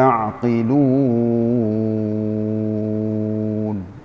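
A man's voice chanting Quranic recitation in the melodic tajwid style. The line is ornamented and wavering for about the first second and a half, then settles on one long held note that falls off just before the end, closing the verse.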